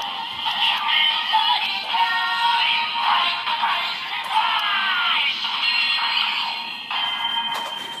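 A Kamen Rider transformation belt toy playing its transformation sequence through its small built-in speaker: synthesized singing voice over music, thin-sounding with little bass, ending in a single held high tone in the last second.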